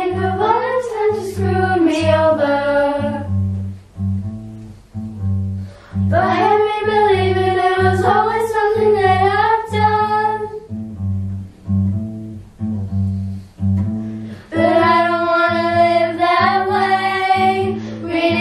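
Children singing a song together to strummed acoustic guitar accompaniment. The voices sing three phrases, with short guitar-only gaps about four seconds in and again from about ten to fourteen seconds in.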